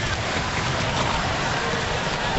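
Steady crowd noise filling an ice hockey arena during play, an even wash of sound with no single event standing out.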